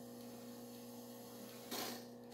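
Faint steady electrical hum from the TV playing the blank start of a VHS tape, with a short burst of hiss near the end.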